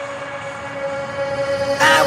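Electronic dance-pop music in a breakdown: a sustained, horn-like synth chord with the bass and drums dropped out, and a bright rising swell near the end.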